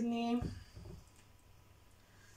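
A woman's voice holding a short vowel for about half a second, followed by a soft low thump, then quiet room tone.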